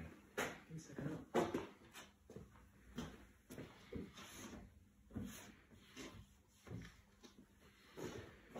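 Quiet, irregular knocks and footsteps on a hard workshop floor, with light handling knocks as a wooden floating shelf is touched.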